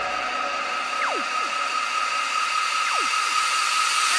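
A beatless breakdown in a future bass electronic dance mix: sustained high synth tones with no bass or drums. Quick falling pitch sweeps cut across it about a second in and again about three seconds in.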